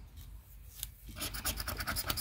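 Rapid scratching strokes of a red scratcher scraping the coating off a scratch-off lottery ticket, starting about a second in and growing louder.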